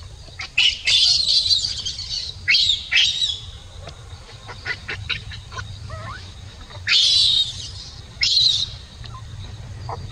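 Baby macaque screaming in four loud, shrill bursts, each starting with a quick upward squeal. Two come in the first three seconds and two more around seven to nine seconds in.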